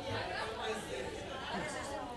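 Faint chatter: people talking quietly at once, softer and less distinct than the speech into the microphones.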